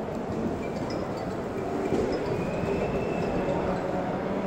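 Steady din of a large exhibition hall: a low, even rumble of distant crowd and activity with no distinct events, and a faint high tone held for about a second midway.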